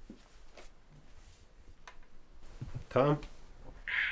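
Faint small clicks and rustles of handling, then a short spoken utterance about three seconds in, the loudest thing here.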